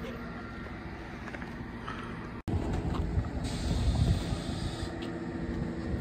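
A heavy vehicle engine runs steadily while a winch drags a seized tank up a low-loader ramp. After a cut about two and a half seconds in it is louder, with more rumble and a hiss lasting a second or so past the midpoint.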